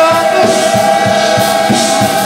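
Men's gospel choir holding one long sung note, with a steady beat underneath at about three strikes a second.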